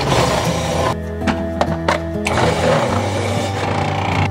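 Background music over a food processor shredding raw potatoes, running in two spells: one at the start lasting about a second, and a longer one from about two seconds in to near the end.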